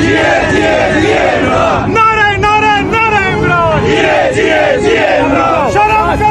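A crowd of protesters shouting slogans, many loud voices overlapping.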